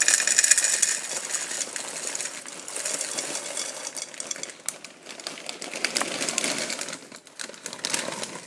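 Handling noise on the microphone: irregular rustling and scraping with many small clicks and knocks, loudest in the first second.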